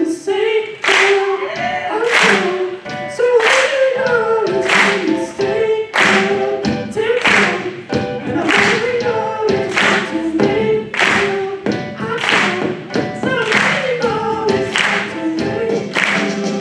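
Voices singing a melody over live band music, with hand claps on a steady beat, a strong clap about every second and a quarter and lighter ones between.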